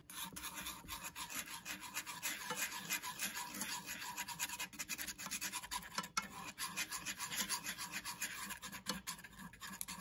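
Melted butter sizzling and crackling in a cast iron skillet while wooden chopsticks stir it, scraping against the pan bottom in quick repeated strokes.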